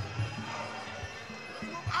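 Dull low thumps over steady background music: a few in the first half-second and two more close together near the end.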